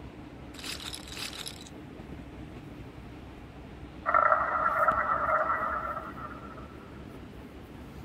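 Sound effects of an online roulette game: a brief chip-clatter rattle about half a second in as the bets go down, then a louder chime of several held tones about four seconds in that fades over roughly two seconds, over a steady low hiss.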